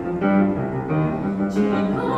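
Grand piano playing a short solo passage of a classical art song's accompaniment, between the soprano's sung phrases.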